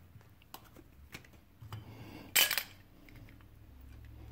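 Light clicks and taps of a Zebco 733 spincast reel and its small parts being handled, with one louder, short metallic clatter a little past halfway.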